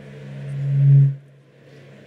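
Low-pitched feedback hum through the stage PA: one steady tone that swells for about a second, then cuts off suddenly.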